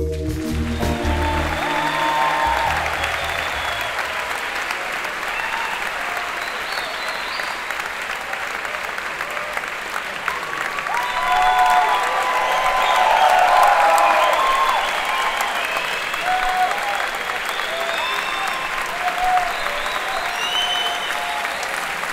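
Large theatre audience applauding steadily, with scattered cheers and whoops rising above the clapping and a swell of applause around the middle. A deep music sting fades out in the first few seconds.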